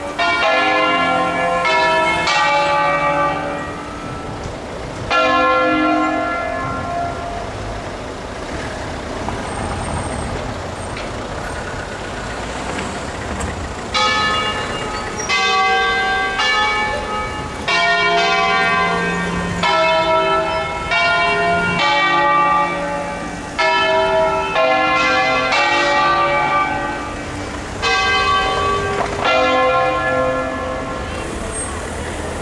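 Six-bell ring of church bells in C, cast by Comerio in 1790, rung by hand in a melodic concerto sequence: groups of bell strikes, a pause from about six to fourteen seconds in which the bells die away, then the strikes resume.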